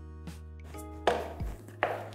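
Soft background music of sustained tones and a low drone, with a short scraping swish of a broom stroke on the floor about a second in and another scrape near the end.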